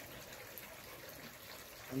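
Faint, steady outdoor background noise, an even hiss with no distinct events, and a man's voice starting right at the end.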